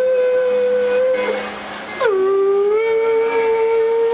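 A man singing long, wordless high notes into an amplified microphone. Each note starts with a short downward slide and then holds steady. The first breaks off just past a second in, and the next begins about two seconds in.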